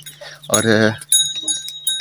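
A young goat bleats once, a wavering call about half a second long. Faint high chirps follow in the second half.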